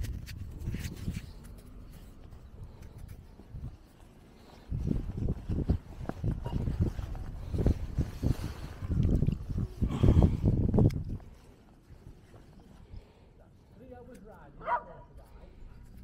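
Gusty wind rumbling on the microphone in irregular surges across the middle, then dying down. Near the end come a few short, high-pitched yelps.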